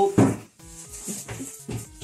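A jam-jar lid is set down on a wooden table with a sharp knock just after the start, then a lighter knock near the end.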